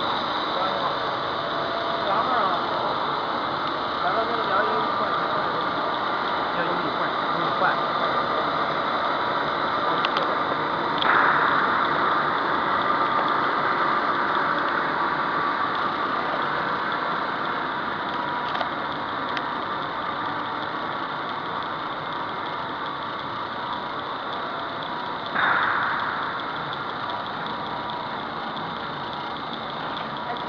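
Steady machinery din from a running polyethylene foam sheet extrusion line, with two brief louder surges of noise about fourteen seconds apart.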